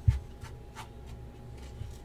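Hands turning over a cardboard trading-card box on a desk: a soft knock as it starts, then quiet rubbing and sliding against the box with a light tick a little under a second in.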